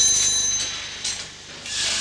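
Shrill shaft signal bell at a steam winding engine's control stand, ringing on several high tones and cutting off about half a second in. It is one of the signals from the shaft that tell the engine driver to work his levers. A hiss rises near the end.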